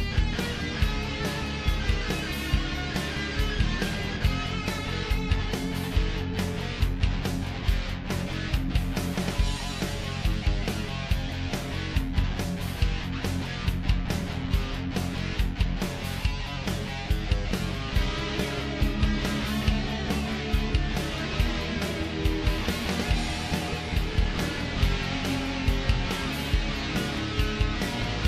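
Background rock music with guitar and a steady beat.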